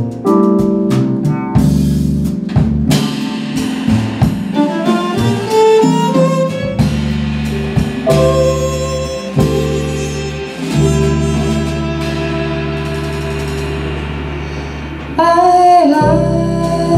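Small jazz band playing live, with violin, keyboard, upright bass and drum kit; a rising run of notes about three to six seconds in, and a louder held note with vibrato coming in near the end.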